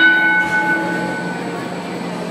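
A bell ringing once, its ringing tone dying away over about a second and a half, over a steady low hum.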